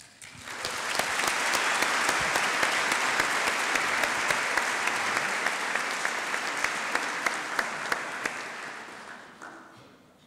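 Audience applauding, swelling within the first second, holding steady, then dying away over the last second or so.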